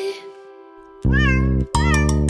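Cartoon kitten meowing, two short calls that rise and fall in pitch, over bouncy children's music; the music fades out at the start and comes back about a second in with the first meow.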